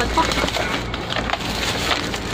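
Crackling and clicking from plastic-bagged action-camera accessories being handled, with several sharp clicks as small parts knock together.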